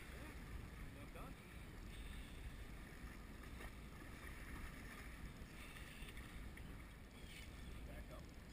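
Low, steady wind rumble on the microphone, with faint water noise around a small boat.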